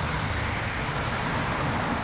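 Steady outdoor background noise, a low rumble with a hiss over it, and no distinct events.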